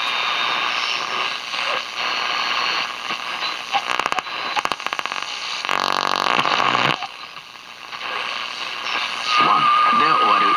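Valve (6AQ7) FM radio being tuned across the band through its speaker: hiss and static between stations, with crackles and a run of sharp clicks as the dial moves. In the middle comes about a second of buzzy pitched tone from a passing signal, then a brief quieter dip. Near the end a station comes in louder as the tuning settles.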